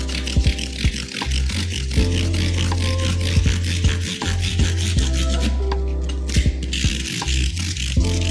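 Background music with a strong held bass line, over the rubbing of 220-grit sandpaper worked by hand along the edge of a rosewood fretboard to roll over its sharp edge.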